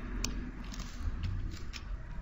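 Light clicks from a computer mouse, about five in two seconds with the first the sharpest, over a low steady hum.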